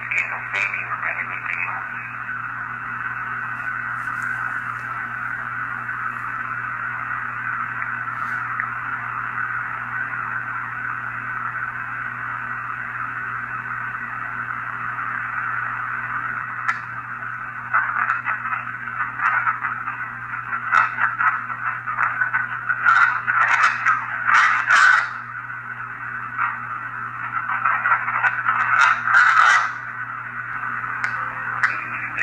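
Spirit box sweeping radio bands: a steady hiss of static, breaking into louder, choppy fragments of chopped-up broadcast sound in the second half, with a low steady hum under it.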